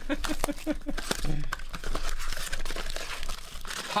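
Plastic shrink wrap on a trading-card blaster box being torn off and crinkled by hand: a dense, continuous crackle. A voice is heard briefly in the first second or so.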